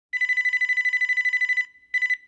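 Telephone ringing: an electronic ring with a fast warble, about fifteen pulses a second, lasting about a second and a half, then a short break and the next ring starting near the end.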